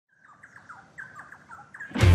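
A songbird chirping: a quick run of short notes, each sliding down in pitch, about five a second.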